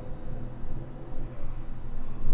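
A steady low rumble or hum with nothing else standing out.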